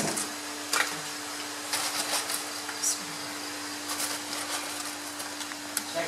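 Steady hum and hiss, with a few faint clicks, from a gas stove burner heating a wok of cooking oil before frying.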